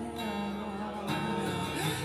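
Acoustic guitar strummed, its chords ringing on, with a fresh chord struck about a second in.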